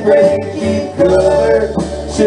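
A live band playing a country song in rehearsal, guitar to the fore over bass.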